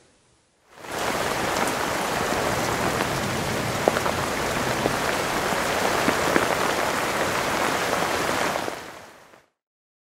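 A steady rain-like hiss with a few scattered light ticks, fading in about a second in and fading out near the end.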